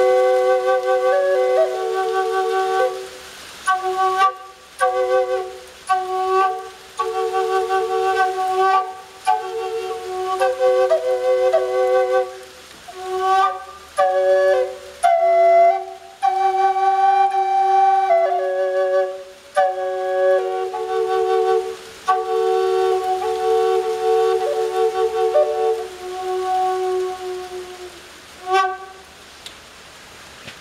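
Catalpa wood drone flute in G minor, tuned to 432 Hz, being played: one bore holds a steady drone note while the other plays a slow melody above it, in breath-long phrases with short pauses between. The playing stops near the end.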